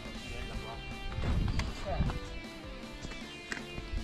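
Background music with steady sustained notes, with a person's voice heard briefly over it.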